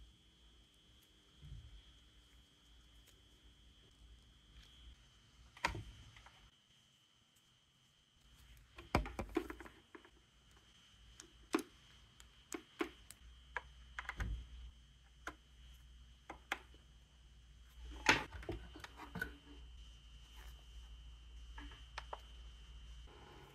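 Scattered light clicks, taps and rustles of a power cord with a twist tie and the plastic plugs of an HDMI cable being handled by gloved hands. There are about a dozen irregular sharp clicks, the loudest near the end.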